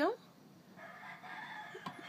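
A faint, drawn-out animal call in the background. It holds a steady pitch for about a second, starting shortly after a woman's word trails off.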